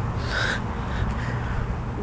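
Steady low rumble of outdoor background noise, with one brief higher-pitched sound about half a second in.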